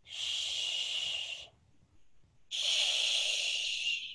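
Two long shushing "shhh" sounds made by voice, one at the start and one about halfway through, each lasting about a second and a half.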